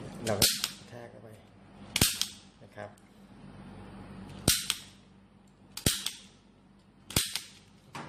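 A punch-down insertion tool snaps five times, sharply and loudly, spaced over several seconds. Each snap is the tool seating and trimming a telephone wire pair into the contacts of a 10-pair connection strip in an MDF box.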